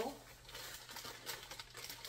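A bag of lemon bar filling mix crinkling as it is handled and emptied into a bowl, in faint, irregular rustles.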